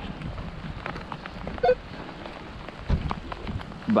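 Light patter of wet snow and rain with footsteps crunching through playground wood-chip mulch, many small scattered taps. A short tone with a knock comes about halfway through, and a low thump about three quarters of the way in.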